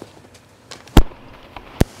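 Two sharp thumps about a second apart, the first the louder, over a low background with no engine running steadily.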